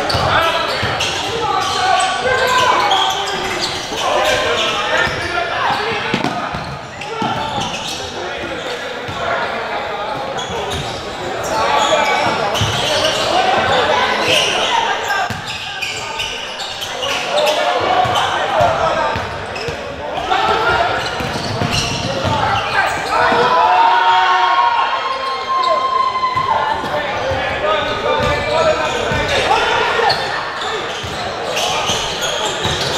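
Basketball being dribbled on a hardwood gym floor amid the continual talk and calls of spectators and players, echoing in a large hall.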